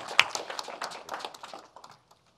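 Polite applause from a small group, a quick patter of individual claps that thins out and stops shortly before the end. Two sharper knocks stand out at the very start.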